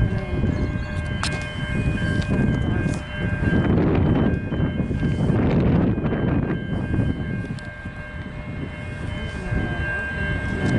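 Low rumble of an approaching grain train's diesel locomotives, still far off, mixed with uneven noise that swells loudest in the middle seconds.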